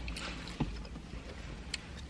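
Faint handling of takeout food containers, a paper bowl and a small plastic salsa cup: a light rustle near the start and two small clicks about a second apart, over a low steady rumble.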